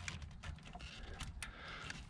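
Faint, scattered light clicks and taps: a spark plug held in a 5/8-inch socket on an extension knocking lightly against engine parts as it is guided down to the spark plug hole.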